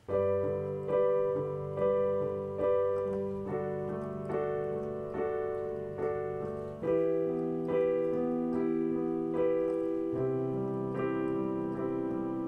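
Electronic keyboard with a piano sound playing block chords of a G, D, E minor progression, with left-hand bass notes under the right-hand chords. Each chord is struck again on a steady beat a little under once a second, and the harmony changes about 7 s in and again about 10 s in.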